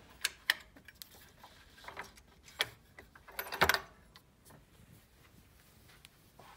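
Handling noise as a handwoven scarf is moved about over a wooden loom: a few soft clicks and rustles, with a louder scuffle about three and a half seconds in.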